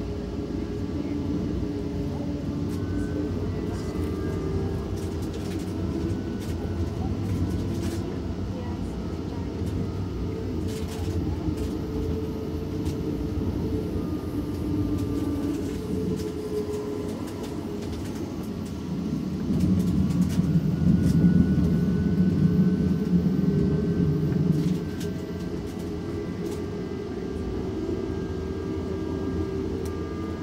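Alstom Citadis Spirit light-rail car running between stations, heard from inside the car: a steady low rumble of the wheels on the rail. The rumble swells louder for several seconds past the middle, and a faint whine slowly rises in pitch toward the end.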